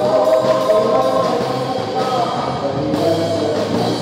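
Tagalog worship song sung by a small group of singers into microphones, backed by a live band of electric guitars and drum kit.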